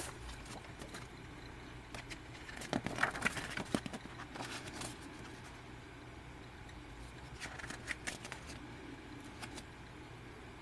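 Pages of a glossy paper booklet being handled and turned: faint rustling and light clicks of the paper, with busier handling about three seconds in and again near eight seconds.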